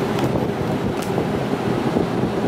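Wind buffeting the microphone inside a Ferris wheel gondola: a steady low rumble, with a faint click about a second in.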